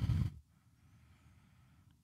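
A faint low sound for the first half second, then near silence.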